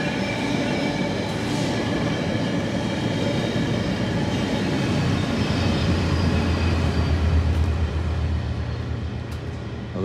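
Metrolink diesel commuter train passing, its wheels rumbling steadily on the rails. A deep low drone builds about halfway through and eases off near the end.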